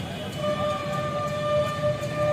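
A vehicle horn sounding one steady note for about two seconds, starting about half a second in, over low street and crowd noise.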